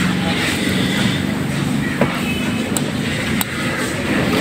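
Small metal clicks as steel valve keepers are set into the spring retainers of a Honda Civic cylinder head with a thin metal tool: three short ticks about halfway through and near the end. Under them runs a steady mechanical hum.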